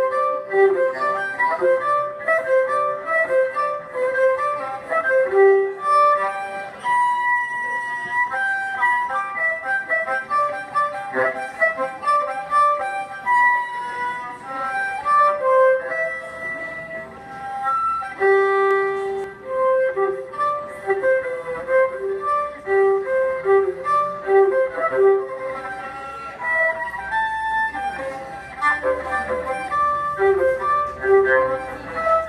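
Solo violin playing a fast original tune built from natural harmonics, the lightly touched string points that give clear, ringing, flute-like tones. Quick runs of short notes with a few longer held notes.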